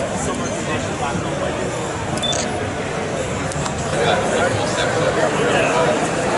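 Babble of many visitors' voices in a crowded indoor hall, with nearer voices growing louder about two-thirds of the way through.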